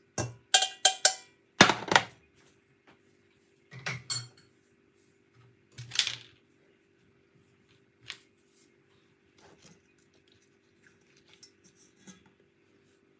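Stainless steel strainer and pan clinking as they are handled and set down: a quick run of ringing metal clinks in the first second, a louder knock just after, then a few scattered knocks over the following seconds. A faint steady hum runs underneath.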